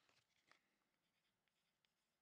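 Near silence, with a few faint clicks and rustles of trading cards being handled, the clearest about half a second in.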